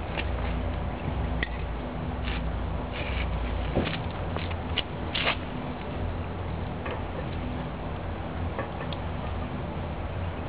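Irregular light ticks and taps of water dripping from the bottom of a terracotta pot as a wet hand works at its base, over a steady low rumble. The leached lye water is running outward along the pot's underside rather than dripping cleanly through the hole.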